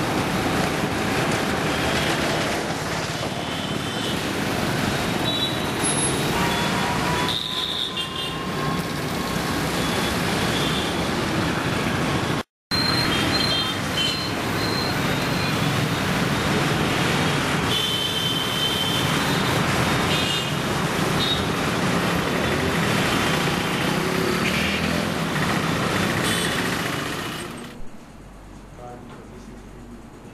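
Steady city road traffic noise from passing vehicles, with a few short high tones over it and a brief dropout about halfway through.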